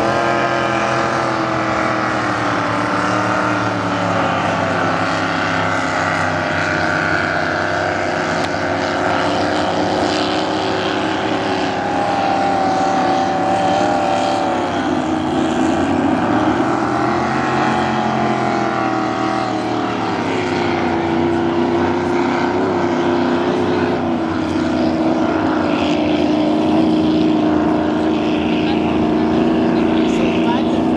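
Engines of several racing powerboats running flat out together, a loud unbroken drone whose pitch slides down and back up as the boats pass and round the course.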